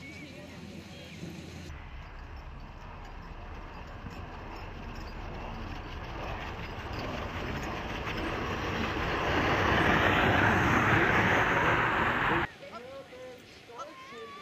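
Sled-dog team and sled passing close: a rushing hiss of sled runners and paws on packed snow that grows steadily louder as the team approaches, then cuts off suddenly near the end.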